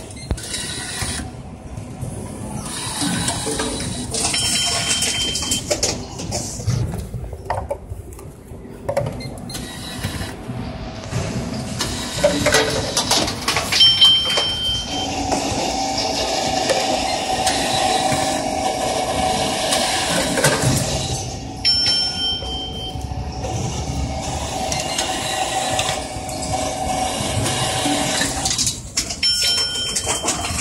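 Reverse vending machine taking in a plastic bottle and processing it, with its mechanism running and a steadier motor hum through the middle. Short electronic beeps sound three times.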